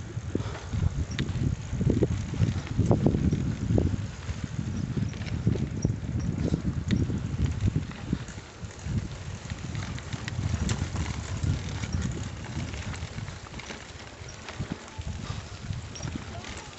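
Bicycle rolling over a bumpy dirt track, heard from the rider's phone: an uneven low rumble with rattling and knocks, louder over the first half.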